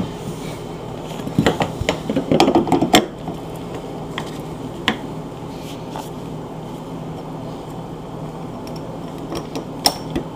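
Metal hinge hardware (bolts and washers) clinking and rattling as it is handled and fitted into a refrigerator door hinge. There is a quick flurry of clicks about a second and a half in, then a few single clicks later.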